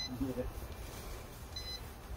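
Short, high electronic beeps from a Holy Stone HS720E drone setup, one at the start and another near the end, repeating about every second and a half. A brief murmur of a voice follows the first beep, over a low steady rumble.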